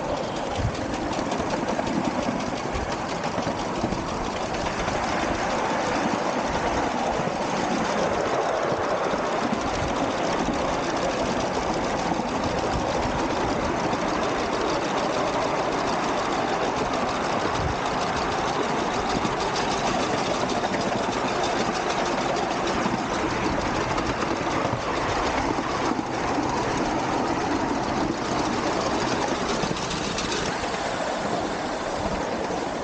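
Miniature ride-on steam locomotive hauling a passenger car, running steadily with a rapid, even clatter of exhaust beats and wheels on the track.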